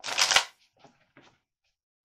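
A tarot deck being shuffled: one loud, half-second riffle of cards at the start, then a few short, quieter card flicks.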